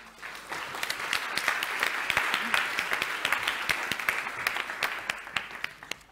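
Audience applauding. It starts suddenly, builds over the first second, and dies away near the end.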